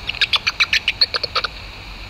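Bat detector output of common noctule bat calls: a quick run of about a dozen short chirps, roughly eight a second, lasting just over a second, over the detector's steady hiss.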